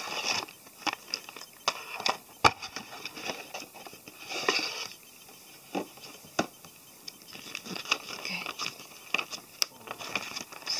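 A cardboard model-kit box and its clear plastic parts tray being handled, giving scattered clicks, taps and scrapes. A longer rustle comes about four and a half seconds in.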